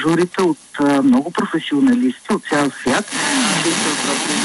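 Speech from a Romania Cultural FM broadcast playing through the small speaker of a Tivoli Audio PAL+ portable radio, with a steady hiss under the voice from weak long-distance reception.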